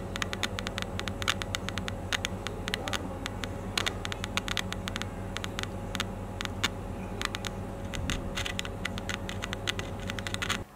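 Small 8-ohm, 1.5-watt computer speaker crackling with many irregular clicks over a steady low hum, fed straight DC from a small solar cell with no audio signal. The crackle shows that the solar cell's current is reaching the speaker coil.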